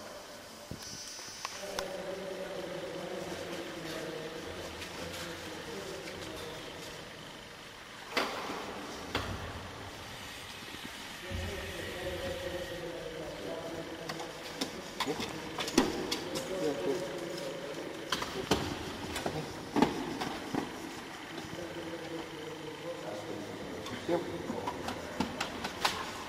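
Indistinct voices talking in the background, with scattered short clicks and knocks.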